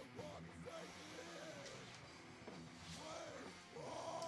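Faint background band music with a singing voice, played from a recording.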